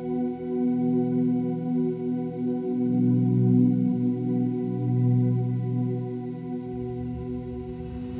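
Electric guitar played through digital effects pedals, with the Dr. Scientist BitQuest being demonstrated: a steady held drone with low notes shifting underneath it.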